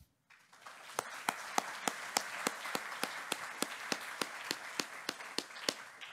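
Audience applauding at the end of a talk. The applause starts about a third of a second in, with a few sharp, louder claps standing out about three times a second over the steady clapping of the crowd.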